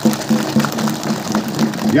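Audience clapping: a dense patter of many hand claps greeting an introduced guest, over a steady low tone.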